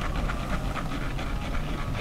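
Hands squeezing and working a wet cloth in shaving lather in a sink, a quick irregular run of small wet clicks and squelches over a steady low hum.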